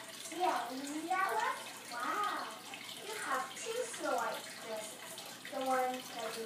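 Dialogue from a television programme, heard through the TV's speaker as recorded by a phone: higher-pitched voices talking in short phrases, muffled and roomy, over a steady hiss.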